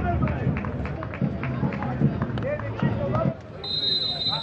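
Indistinct voices, then near the end a referee's whistle: a single steady, high blast lasting under a second, signalling the kick-off.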